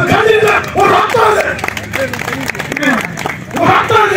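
A man's voice making a speech into a handheld microphone, amplified over a loudspeaker.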